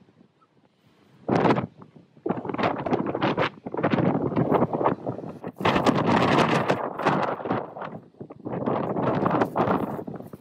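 Gusty wind buffeting the microphone in irregular loud bursts, starting about a second in and running almost without a break after that.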